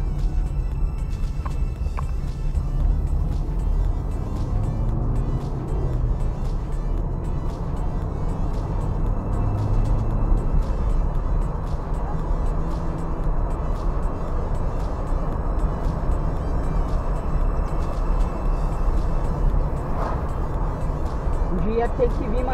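Steady low rumble of road and engine noise inside a moving car's cabin, with faint music underneath.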